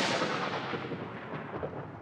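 The fading tail of a loud crash: a rushing noise that dies away steadily, its highs fading first.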